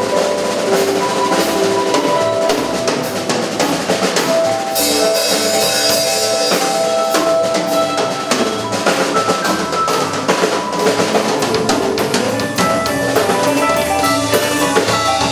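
Live rock band playing an instrumental passage: a drum kit keeps a steady beat on bass drum and snare under held keyboard notes, with a cymbal crash about five seconds in.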